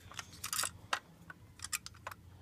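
A handful of faint, scattered clicks and taps from a die-cast model stock car being handled and turned over by hand.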